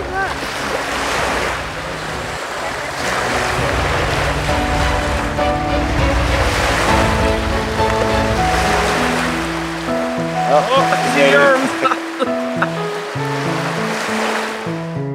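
Lake waves washing and splashing along with wind, under background music of steady held notes that grows more prominent in the second half; voices call out briefly at the start and again about ten to eleven seconds in.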